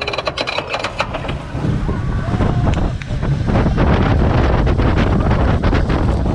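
Vekoma flying roller coaster train clicking over the top of its lift hill for about a second and a half, then dropping away: the clicks give way to the rumble of wheels on the track and wind on the microphone, growing louder as the train picks up speed.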